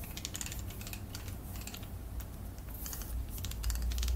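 A run of light, irregular clicks and taps close to the microphone, like handling noise.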